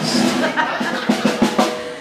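Live drum kit playing a run of irregular snare and bass drum hits, which fade toward the end.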